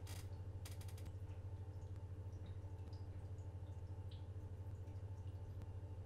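Faint, steady low electrical hum of the recording's background, with a few light clicks in the first second.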